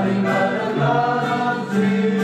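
Singing of a worship song, accompanied by a strummed acoustic guitar.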